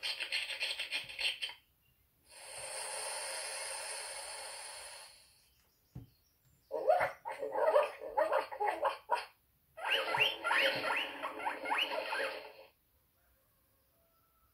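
Recorded pet sounds from a children's sound book's small speaker, one clip after another: a run of rapid calls, then a steady hiss a couple of seconds in, a button click, and two more runs of quick squeaky calls.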